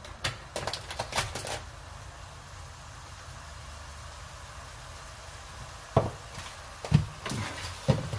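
A wooden spoon scraping and turning rice in an aluminium pan a few times, then a steady faint hiss of the rice frying in oil, broken near the end by three short dull knocks about a second apart.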